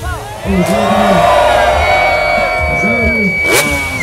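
Freestyle motocross bike's engine revving high as the rider flies through the air, mixed with a man's voice over the PA.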